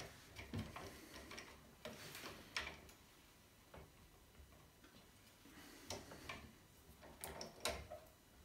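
Faint, scattered clicks and taps, about eight spread irregularly over several seconds, from hands working a steel sash clamp on a glued wooden joint.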